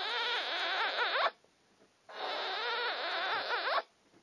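A girl's voice making two long, wavering squealing noises into hands cupped over her mouth, each about a second and a half long with a short pause between.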